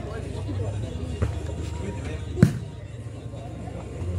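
An ecuavoley ball struck hard by hand, one sharp slap about two and a half seconds in, typical of the serve putting the ball into play; a lighter knock comes just over a second in. Spectators' chatter and a low steady hum lie underneath.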